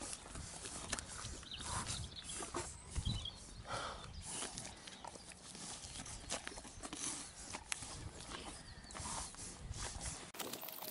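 A pony licking and biting at a frozen carrot ice lolly held to its muzzle: irregular mouthing with scattered sharp crunches and clicks, and a few low rumbles, the loudest about three seconds in.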